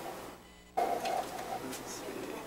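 Faint clicking and handling noise from a laptop being worked at a podium, picked up by the podium microphone over room noise. The sound drops out almost completely for a moment under a second in, then comes back abruptly.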